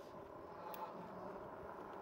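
Faint, steady outdoor background noise with one light click about three-quarters of a second in.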